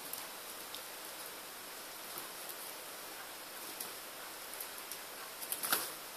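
A puppy's claws ticking lightly now and then on a tile floor over a steady low hiss, with a few quicker, louder taps near the end.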